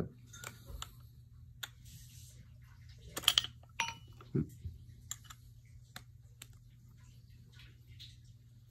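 Parts of a wooden folding guitar stand being handled and fitted together: scattered light clicks and knocks of the wooden legs, screw and tightening knob, the loudest cluster about three seconds in.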